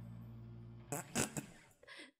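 The karaoke backing track ending on a held low note that fades away. About a second in come three short, sharp bursts of sound in quick succession, and a smaller one near the end.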